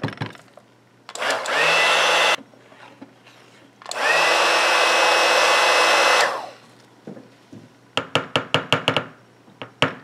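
Immersion stick blender run in two short bursts in a bucket of cold-process soap batter, each with a whine that rises as the motor spins up, blending the batter to an opaque emulsion. Near the end come a quick run of sharp taps.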